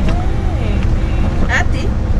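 Steady low rumble of a moving minibus's engine and road noise heard inside the cabin, with a faint steady hum, and a woman's voice briefly breaking in about one and a half seconds in.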